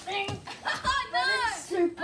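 Children's voices calling out, the longest call in the second half bending up and down in pitch.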